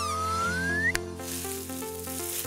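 Short outro jingle: held chords under a whistle-like tone that slides up and ends in a sharp click about a second in, followed by a hiss.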